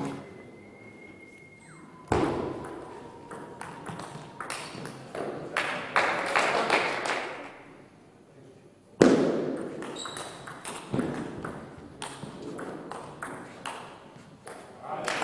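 Table tennis play: the ball clicking sharply off rackets and the table in quick exchanges, in two spells about a second apart, the second opening with a loud hit. The clicks ring slightly in a large hall.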